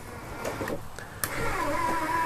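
The electric motor of a horse trailer's power slide-out starts about a second in and runs with a steady whine as the slide room moves.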